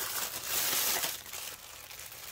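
Shiny metallic foil gift wrap crinkling as it is pulled open by hand, loudest in the first second and then fading.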